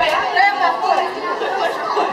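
Several people talking over one another, unintelligible chatter.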